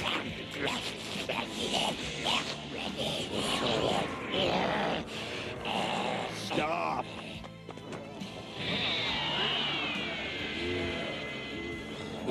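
Anime fight soundtrack: background music under repeated monster cries and hit sound effects, then a high electronic whine that falls in pitch about nine seconds in.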